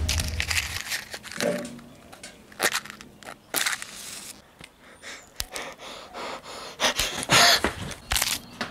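Wooden matches struck repeatedly against a matchbox: a run of short, scratchy strikes, a few drawn out into a longer hiss as the match flares.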